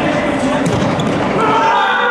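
A futsal ball being kicked and bouncing on a hard indoor court, with players' footsteps, echoing in a large sports hall. About one and a half seconds in, raised shouting voices start up and carry on.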